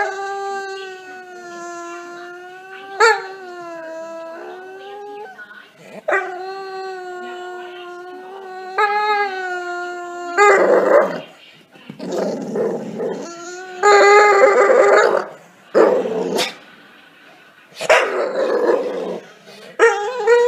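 A Staffordshire bull terrier howling: two long, drawn-out howls held at a steady pitch over the first ten seconds, then a string of five shorter, rougher yowls.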